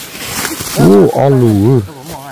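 A man's loud, drawn-out exclamation, "oa", starting a little under a second in and lasting about a second, its pitch rising and falling.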